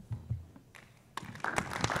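Applause from a seated audience and panel: scattered hand claps start about a second in and quickly build into steady clapping.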